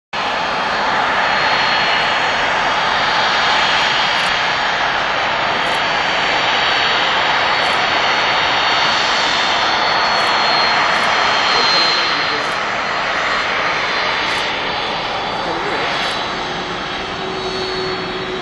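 Jet engines of a Boeing 767 airliner running, a loud steady rushing noise with a thin high whine held through it.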